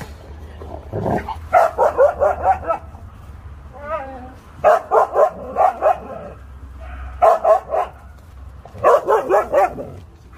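Dogs barking in four quick bursts of several barks each. A single wavering, whine-like call comes about four seconds in.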